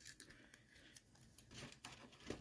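Near silence with a few faint clicks and crinkles: fingers peeling a sticker off a plastic blister pack.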